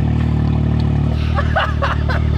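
Can-Am Maverick X3's 400-hp turbocharged three-cylinder engine idling steadily, its pitch holding level. A man laughs in the second half.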